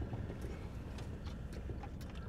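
A few faint, soft clicks and small handling noises over a low, steady background rumble.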